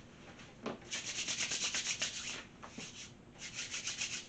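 Hands being wiped on a cloth kitchen towel. There are quick, rhythmic rubbing strokes, about seven a second, in two bursts: one starting about a second in and a shorter one near the end.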